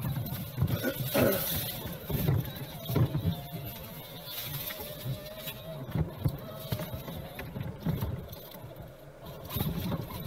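Axial SCX6 1/6-scale RC rock crawler driving over creek-bed stones: irregular knocks and scrapes of the tyres and chassis on rock, with a faint electric motor and gear whine through the middle few seconds.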